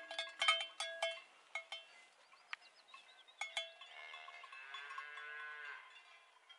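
A cowbell clanking irregularly, each strike ringing briefly. About four seconds in a calf gives a drawn-out, high moo lasting nearly two seconds.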